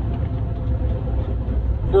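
Steady low rumble of a truck's engine, heard from inside the cab.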